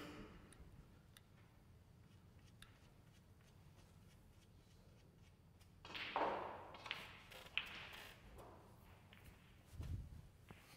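Snooker balls clicking as a shot is played, a few sharp clicks about six to eight seconds in, with a brief rushing noise as it starts. Around it, quiet room tone with a soft thump at the start and another near the end.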